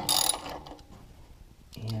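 Socket ratchet clicking in a quick, dense burst at the start as it turns an already-loosened lower shock-mount bolt, then dying away.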